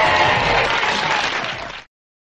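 Crowd applause and cheering from the recording, which cuts off suddenly to silence near the end.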